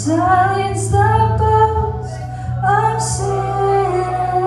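A woman singing a worship song with a live band, her held notes sliding between pitches over guitars and a sustained low bass line.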